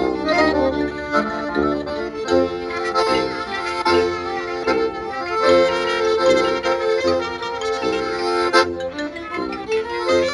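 A klezmer band playing a dance tune live, led by accordion, with violin, marimba and sousaphone.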